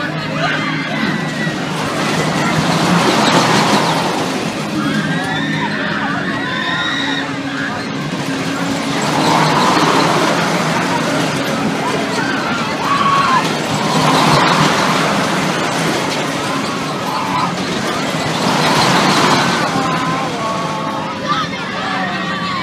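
Carnival thrill ride running, with a swell of rushing noise each time its arm sweeps past, about every five seconds, over a steady low machinery hum. Riders' shouts and voices rise and fall with each pass.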